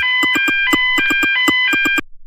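Cartoon electronic phone alert: rapid high beeps, about six a second, stepping back and forth between two pitches, cutting off suddenly at the end.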